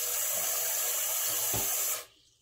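Bathroom faucet running into a partly filled sink, a steady rush of water that stops suddenly at the end as the tap is shut off.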